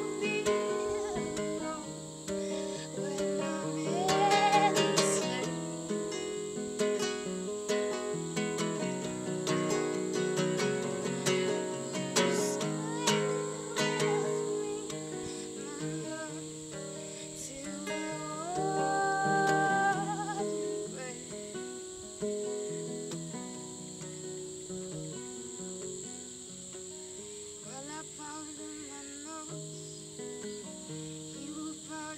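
Nylon-string classical guitar fingerpicked in an instrumental passage, with crickets chirring steadily in the background. The guitar grows sparser and quieter in the last third, leaving the crickets more prominent.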